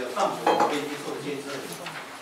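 A couple of sharp clinks of crockery, like a ceramic mug being set down on a table, about a quarter and half a second in, with a few fainter ticks near the end, over ongoing speech.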